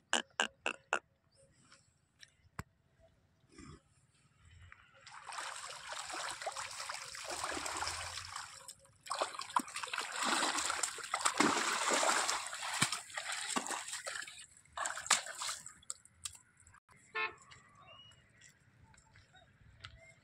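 Banni water buffalo rolling in a mud wallow: wet mud sloshing and splashing in two long spells, one starting about five seconds in and another around ten seconds, with a few sharp clicks at the very start.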